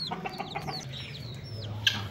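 Young chicks peeping: several short, high peeps, each falling in pitch, with a single knock near the end.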